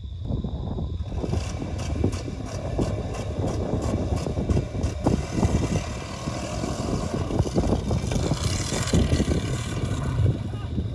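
Driverless Dodge Durango V8 running off down the dirt track and across the field, heard from a distance as a steady rumble with crackling from about a second in.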